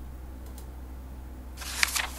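Page-turn sound effect of a flipbook e-book viewer: a short rustling swish of paper with two sharp snaps, starting about a second and a half in.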